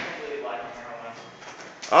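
A door clunks shut once, sharply, right at the start, followed by a quiet stretch of hallway room tone. A man starts speaking near the end.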